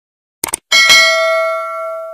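A quick burst of clicks, then a bell strikes once and rings on with a clear, steady tone, slowly fading: the click-and-bell notification sound effect of a subscribe-button animation.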